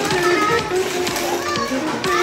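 Children's voices and chatter mixed with music playing in the background.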